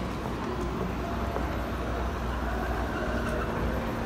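Steady mechanical hum and low rumble of a running escalator, over the general background noise of a mall.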